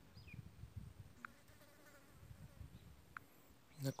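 Quiet background: a faint low rumble with a few faint short chirps and ticks. A man's voice starts just before the end.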